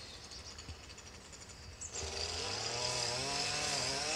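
A strimmer's small engine running faintly in the background. It comes in about halfway through, its pitch rising and falling as it revs.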